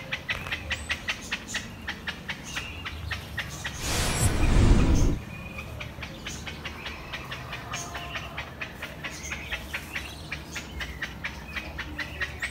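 Small birds chirping rapidly and evenly, about five short chirps a second. About four seconds in, a loud rushing noise covers them for a second and then cuts off suddenly.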